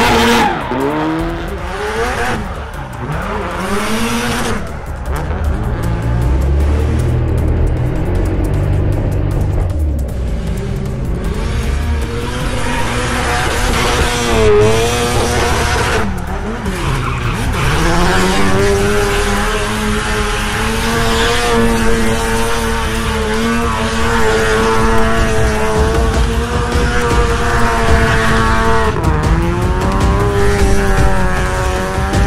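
Turbocharged SR20DET four-cylinder of a drifting Nissan S13 240SX revving up and down with squealing tyres. From about two-thirds of the way in, the engine is held at high revs through a long burnout.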